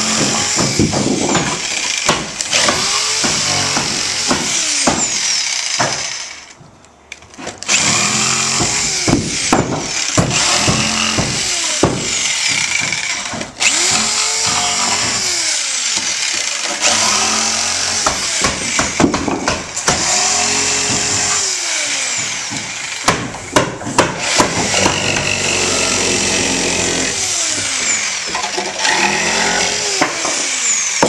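A DeWalt jigsaw cuts out the notches of a wooden stair stringer, finishing the cuts that free the cut-out pieces. Its motor pitch rises and falls again and again as it works through the wood, and it stops briefly about six seconds in before starting again.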